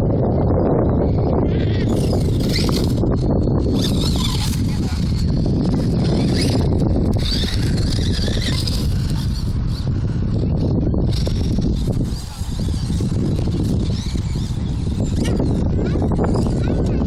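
Heavy wind buffeting the microphone, over the high, wavering whine of an electric RC buggy's motor and drivetrain as it speeds around a dirt track, coming and going as the car passes.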